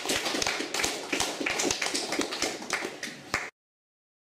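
Audience clapping by hand, dense and irregular, with single claps still standing out. It cuts off suddenly about three and a half seconds in.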